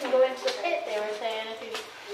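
Indistinct speech: people talking, with no words clear enough to make out.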